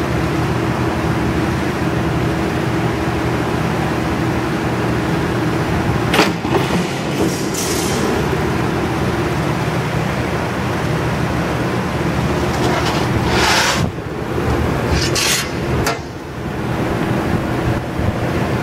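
Cincinnati 12 ft × 1/4 in mechanical plate shear running with a steady hum from its motor and flywheel. About 13 seconds in, the shear strokes and cuts a 1/8-inch steel plate in a short loud burst of noise, with a few brief knocks around it.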